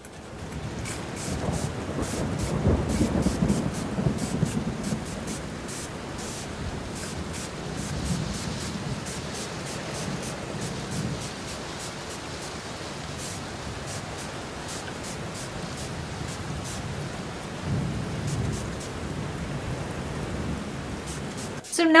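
Water spray bottle squeezed over and over to soak hair, a quick hiss of mist about twice a second, with the rustle of fingers working through the wet hair.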